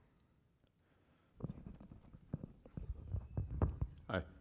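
Irregular low thumps and rustles of a microphone being handled, starting about a second and a half in and growing louder, just before a question is asked into it.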